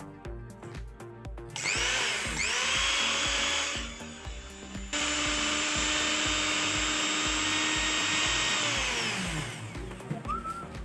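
A small high-speed electric motor whines up to speed and runs steadily, cuts off, then runs again and winds down near the end. Background music with a steady beat plays throughout.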